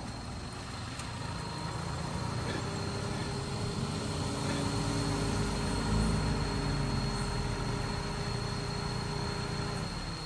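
A car engine idling steadily, growing a little louder toward the middle and easing off near the end.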